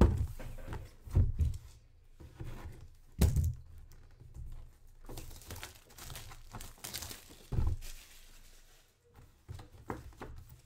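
Cardboard box and packaging being handled and opened: four dull thumps as the box is knocked and set down, with crinkling and tearing of packaging in between.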